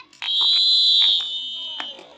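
A referee's whistle blown in one long, steady blast of about a second and a half, with a few sharp clicks over it.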